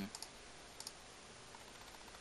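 A few faint clicks on a computer, two just after the start and one a little under a second in, over quiet room tone.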